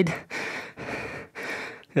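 A man breathing hard through the mouth while lifting dumbbells: a quick run of about four short, breathy exhalations, roughly two a second.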